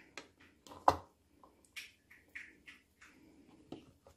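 Fingers prying pomegranate arils loose from the pith and dropping them into a bowl: scattered faint clicks and soft squishes, the sharpest click about a second in.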